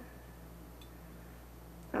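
Quiet room tone with a steady low hum, and one faint tick a little under a second in.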